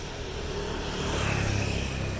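Motorbike engine running as it passes close by, a low hum that grows louder after about a second.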